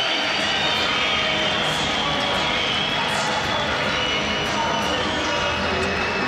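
Large arena crowd noise: a steady din of many voices shouting and cheering, with no pauses.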